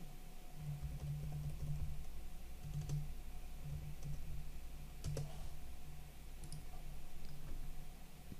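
A few faint, scattered clicks of a computer keyboard and mouse as a node name is typed into a menu search and picked, over a faint low hum.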